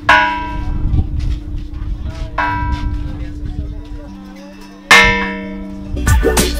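A large hanging bronze bell struck three times, about two and a half seconds apart, each strike ringing out and slowly dying away over a low humming tone; the last strike is the loudest.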